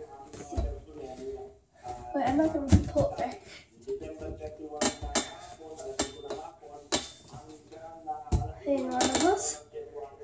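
Home gymnastics bar (a wooden rail on a metal frame) rattling and clanking with a series of sharp metallic knocks and clinks as a gymnast grips it, swings and pulls over it. The knocks come thickest in the second half.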